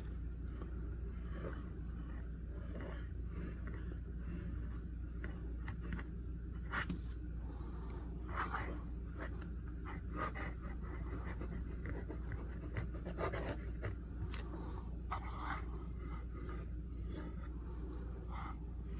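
Fountain pen flex nib scratching faintly across paper in many short strokes while writing cursive, over a steady low hum.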